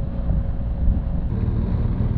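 Riding noise from a BMW R1200 GSA motorcycle: wind rushing over the helmet microphone over the low, steady drone of its boxer-twin engine and tyres.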